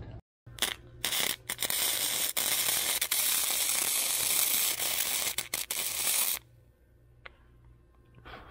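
Flux-core wire-feed welder arc crackling steadily for about five seconds as a nut is welded to a steel plate, after a couple of short starts, with a few brief breaks in the arc and then stopping.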